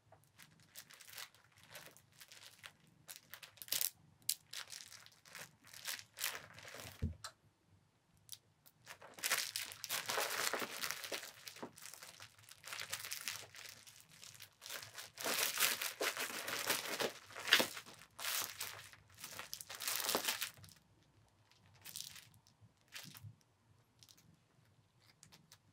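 A cat biting, clutching and kicking a plush fish kicker toy: irregular crinkling and rustling, in heavy bursts through the middle stretch, with one soft thud about seven seconds in.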